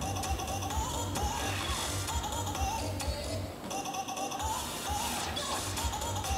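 Background music with a steady bass beat and a wavering melody line; the bass drops out briefly about halfway through.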